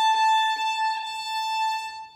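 Violin playing one long bowed note, held steady, stopping near the end.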